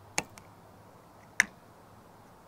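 Two sharp plastic clicks about a second apart, with a faint tick just after the first: the printed-plastic CamWipe 2.0 wiper brush being pressed and snapped onto the wiper arm over its mounting bolt.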